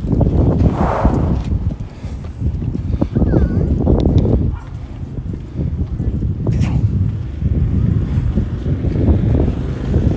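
Wind buffeting the microphone in a steady, gusting low rumble, with brief indistinct voices of people nearby.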